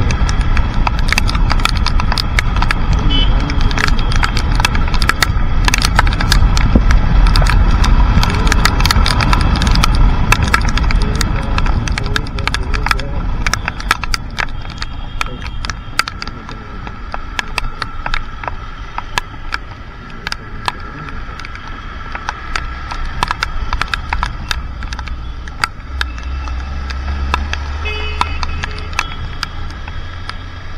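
Motorcycle riding in the rain, wind and engine rush with raindrops ticking sharply and irregularly on the camera. The rush is loud in the first half and eases after about fourteen seconds as the bike slows in traffic.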